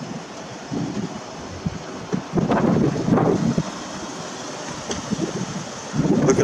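Wind buffeting the microphone of a handheld camera, a rough noisy rumble with stronger gusts about a second in and again from about two and a half to three and a half seconds in.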